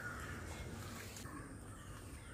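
A crow cawing faintly, with a low background rumble.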